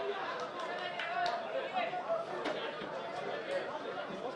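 Field sound at a football match: many voices chattering and calling out at once, none clearly understandable, with a couple of short knocks.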